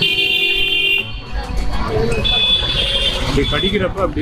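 Background voices and music with a high, steady electronic tone like an alarm or horn. The tone cuts off suddenly about a second in and returns for the second half.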